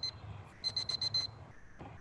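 Electronic timer alarm beeping: a high beep repeated rapidly in bursts of about four, one burst about every second, signalling that the silent writing period is over.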